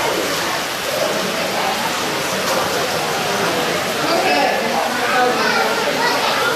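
Indistinct crowd chatter: many voices talking at once, none clear, over a steady hiss.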